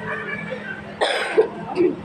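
A person coughing: a loud cough about a second in and a shorter one just before the end, over background voices and music.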